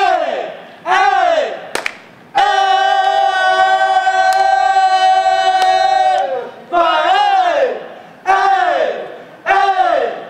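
Men giving a loud yelled fraternity call: a string of calls about a second apart, each rising then falling in pitch, with one long, steady held call of about four seconds in the middle.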